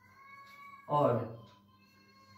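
Whiteboard marker squeaking against the board as a line of text is written: a faint, high, steady squeal that fades out near the end.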